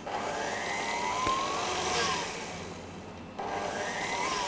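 Electric stand mixer running at low speed with a dough hook, kneading a stiff shortcrust dough of flour, butter and egg yolks. Its motor whine rises and then falls in pitch, and the sound grows louder again about three and a half seconds in.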